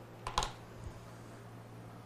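A few keystrokes on a computer keyboard: two quick clicks close together about a third of a second in, then a fainter one just before the middle, over a low steady hum.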